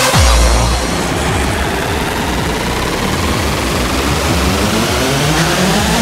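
Early hardcore rave music in a breakdown: a deep bass hit drops in at the start, then a noisy wash with synth tones rising in pitch builds toward the end.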